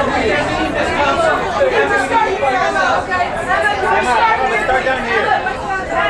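Overlapping chatter of many voices, a press pack calling out over one another.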